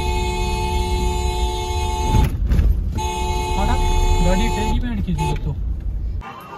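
Vehicle horn held in two long blasts, a chord of several steady tones, breaking off about two seconds in and sounding again from about three seconds to nearly five, over the low rumble of a car driving.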